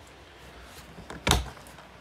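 A single sharp plastic clack about a second and a half in, with a few faint ticks before it, as the body clips are worked off the posts holding down an RC touring car's plastic body shell.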